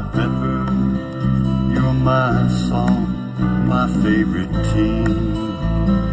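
Instrumental passage of a country song, without singing: sustained bass notes changing about once a second under gliding lead lines.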